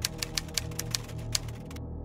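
Typewriter keys clacking in quick, irregular strokes, laid as a sound effect over a steady low music bed; the clacking stops shortly before the end.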